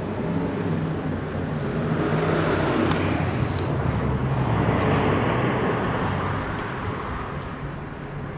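A motor vehicle passing by on the street: engine hum and tyre noise rise over about five seconds and then fade.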